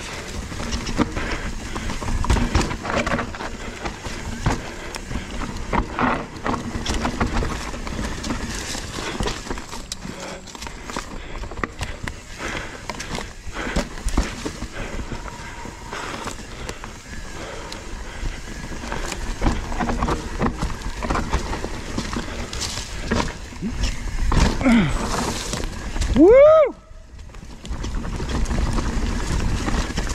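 Mountain bike rolling fast down dirt singletrack: tyres on dirt and leaves, with the bike's frame and drivetrain rattling and knocking over bumps, and wind on the microphone. Near the end a short rising cry is heard.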